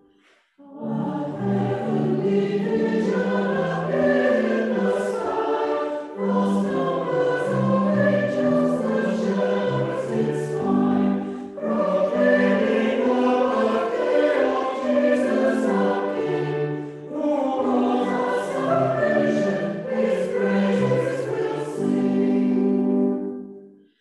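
Church choir singing a carol in reverberant stone surroundings, in phrases of about five to six seconds with short breaths between them; the singing starts again after a brief silence just after the beginning.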